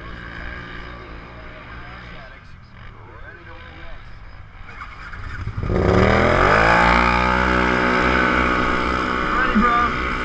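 Polaris RZR XP1000 engines idling on the start line, then about six seconds in the engine is floored for the race launch: a sudden jump in loudness with the pitch sweeping quickly up and then holding high at full throttle.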